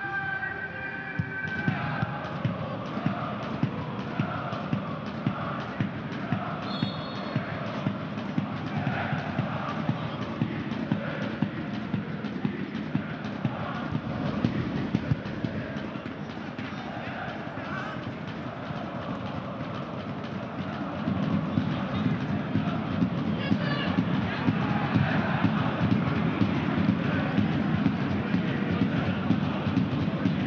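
Football stadium crowd chanting over a steady, even drumbeat, about two beats a second, growing louder about two-thirds of the way through.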